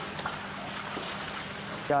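Water trickling and wet splashing as fish are handled in a steel processing trough, over a steady low hum.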